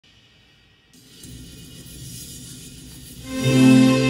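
An ensemble of digital pianos comes in about three seconds in with loud, held chords, after a few seconds of faint room noise.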